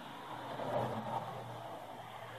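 Faint steady background noise with a low hum.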